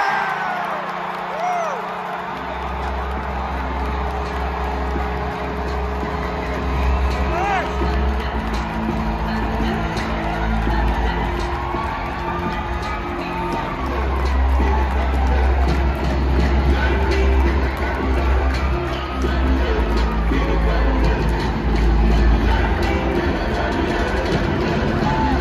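Loud arena sound-system music with a heavy bass beat over a cheering, whooping hockey crowd. The cheer swells at the start, and the music comes in about two seconds later.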